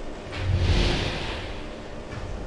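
A passing vehicle: a low rumble with a hiss that swells about half a second in, then slowly fades.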